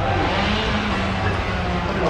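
A passing motor vehicle's engine, a steady low hum.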